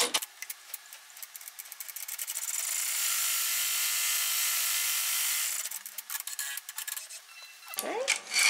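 Ten-needle embroidery machine finishing a tack-down run: fast, even mechanical clicking for about two seconds, then a louder steady whir for about three seconds as the embroidery frame drives forward out from under the needles, then more clicking before a brief handling sound at the end.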